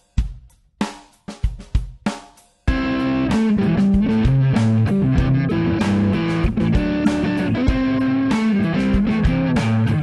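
A drum beat plays alone for the first couple of seconds. Then an electric guitar riff joins it: an Epiphone Casino hollow-body played on its neck P90 pickup, straight through a Kemper Profiler amp modeller.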